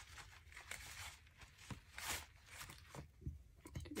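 Faint, irregular rustling and tearing of damp paper as a top layer is rubbed and peeled off a small collage piece, in a few soft swishes.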